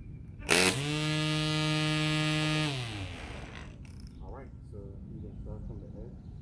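Battery-powered string trimmer with auto-feed line: a sharp burst as it starts, then the electric motor and spinning line whir at a steady high pitch for about two seconds before winding down in pitch as the trigger is released.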